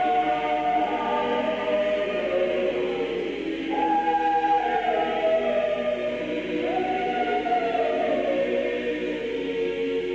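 Church choir singing in several voice parts, long held notes moving stepwise, from a recording of a Sarum Rite High Mass.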